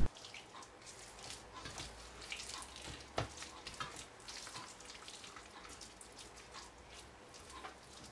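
Faint wet squelching and small clicks of hands rubbing an oiled, mustard-coated beef tenderloin in a stainless steel roasting pan, with one louder tick about three seconds in.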